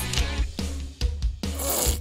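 Background music with short rasping bursts from an empty plastic bubble-bath bottle being squeezed upside down, air and dregs sputtering out instead of liquid.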